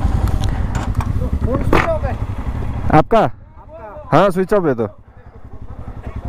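Motorcycle engine idling with a steady low, fast thump, fading about halfway through, while men's voices and laughter break in over it.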